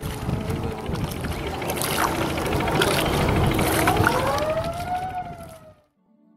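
Outdoor noise by the river: a rough, uneven low rumble with scattered knocks, and about four seconds in a wailing tone that rises and then falls, like a distant siren. The sound fades out just before the end.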